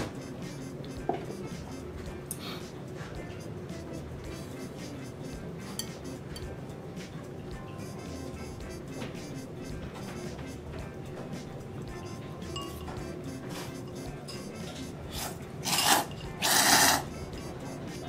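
Background music, with thick tsukemen noodles slurped loudly from a bowl of dipping broth in two quick pulls near the end. A light clink of a ceramic bowl at the start.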